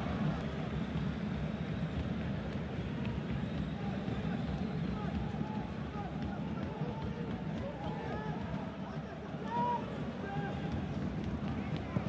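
Pitch-side ambience of a football match in an empty stadium: a steady low background noise with faint, distant shouts of players calling to one another and no crowd.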